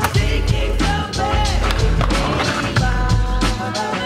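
Skateboard wheels rolling on pavement with sharp clacks of the board, mixed with a hip-hop track with a steady beat.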